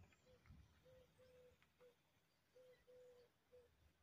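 Near silence: faint outdoor ambience with a few faint, short, low-pitched tones coming and going.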